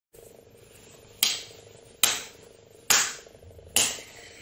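Four sharp percussive hits, a little under a second apart, each dying away quickly, over a faint steady hum.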